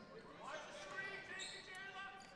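Faint gymnasium sound of a basketball game in play: scattered voices with a basketball bouncing on the hardwood, echoing in the large hall.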